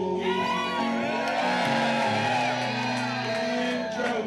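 Live band music with electric guitar and singing, with an audience cheering and whooping over it for the first few seconds.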